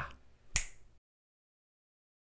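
A single sharp click about half a second in, with a short tail. Then the sound cuts to dead digital silence.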